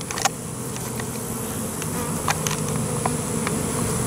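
A swarm of honeybees buzzing steadily close by, a low, even hum, with a few light clicks over it.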